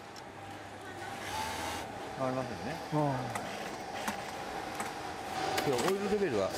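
Garment factory background of running sewing machines: a steady machine hum, with short bits of talk and a laugh in the middle and again near the end.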